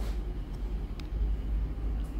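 Calico domestic cat purring steadily, a low rumble, while being stroked on the head. A faint click about halfway through.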